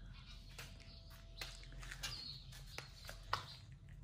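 Quiet outdoor ambience: scattered light crunches of footsteps on dry, leaf-strewn ground, with a brief high bird chirp about two and a half seconds in.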